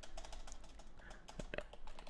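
Typing on a computer keyboard: a quick, irregular run of light key clicks.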